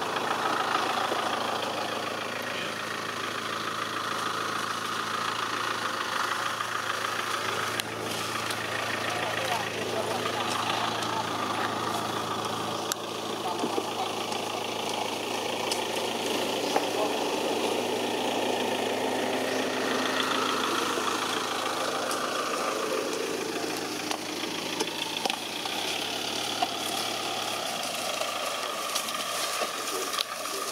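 An engine idling steadily, its low hum shifting slightly a few times, with indistinct voices in the background.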